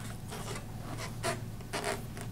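Hands rubbing and gripping an inflated rubber balloon's neck on a plastic bottle-cap nozzle: three short rubbing scrapes, about half a second in, a little past a second and near the end.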